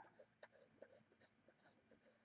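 Near silence with faint, soft scratching ticks of a stylus on a graphics tablet, spaced about every half second, and one small click about half a second in.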